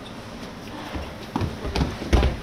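Irregular thumps and knocks of footsteps as a group starts walking across paving, beginning about a second and a half in, over a steady outdoor background.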